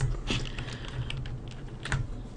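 A few scattered clicks of a computer keyboard and mouse, over a faint low steady hum.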